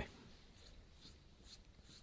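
Near silence: faint room tone in a pause between spoken phrases, with a few very faint ticks.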